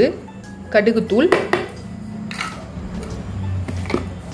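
Kitchen utensils and dishes clinking and knocking while powdered ingredients are mixed in a bowl, with a short stretch of voice about a second in and a steady low hum beneath.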